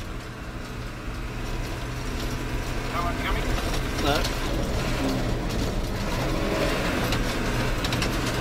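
Four-wheel-drive coach engine running steadily as the coach travels along a gravel road, heard from inside the vehicle.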